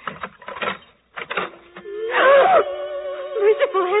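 Radio-drama sound effects of a key clicking in a door lock, then, about two seconds in, a sudden loud cry as a sustained dramatic music chord comes in and holds.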